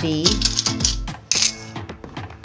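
Coins clinking as they are dropped by hand into small bowls, several sharp clinks, over steady background music.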